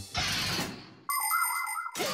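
Cartoon sound effects: a whooshing noise that fades out, then, after a short gap, a steady electronic tone of several high pitches held for about a second.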